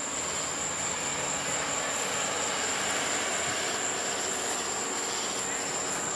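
Crickets chirring in one continuous high tone over a steady low rumbling noise.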